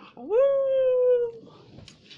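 A person's voice: one long, high call that slides up in pitch, holds for about a second and then stops.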